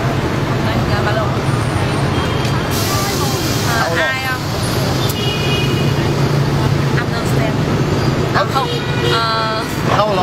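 Steady hum of street traffic, with a few short bits of talk around the middle and near the end.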